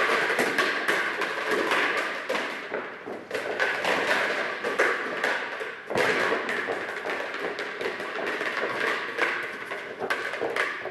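Repeated thumps and taps of a rubber ball bouncing and rolling on the floor, with footsteps, in a large echoing hall. One stronger thump comes about six seconds in.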